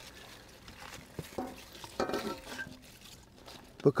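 Chopped cabbage and small red potatoes being tipped from an enamelware bowl into a cast iron Dutch oven and pushed in by hand: soft rustling of leaves with a few light knocks.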